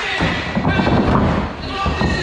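Repeated dull thuds under people's voices.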